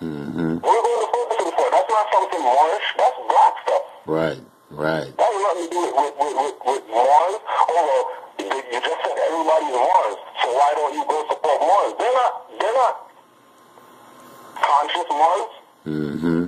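Speech only: a man talking continuously, with thin sound that has little bass, from a played-back video clip. A short pause comes about thirteen seconds in.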